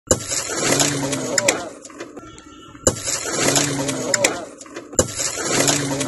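Men's voices talking close by, with one short stretch of sound that plays three times over. Each repeat opens with a sharp click.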